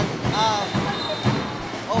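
Referee's whistle blown for a foul: a steady, high, faint tone lasting about a second, heard over basketball court noise.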